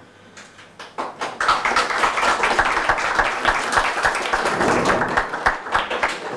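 A roomful of people applauding: a few scattered claps at first, swelling within about a second into steady applause that thins out near the end.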